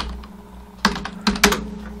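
Computer keyboard keys clicking as a few characters are typed: one click at the start, a pause, then a quick run of keystrokes in the second half. A faint steady hum runs underneath.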